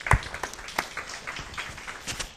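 Audience applauding, many irregular hand claps. There is one heavy thump just after the start, the loudest moment.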